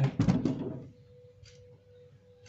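Metal hinge plate and bolt knocking and clattering against the refrigerator door in the first second as the hinge is fitted, then a single faint click about a second and a half in, over a faint steady hum.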